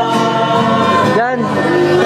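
A group of voices singing a hymn-like song together, with acoustic guitar accompaniment.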